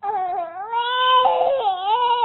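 Young baby crying in one long, wavering wail that starts suddenly.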